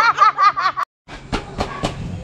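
A woman laughing, cut off abruptly under a second in. After a brief silence come three sharp metallic clanks about a quarter second apart: a steel-barred gate being pushed open.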